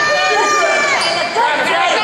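Sneakers squeaking on a hardwood basketball court during play, with high held squeaks in the first second, over shouting voices of players and spectators echoing in the gym.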